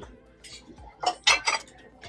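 Ceramic pieces knocking and clinking against each other and a glass shelf as they are handled, about three short clinks in the second half.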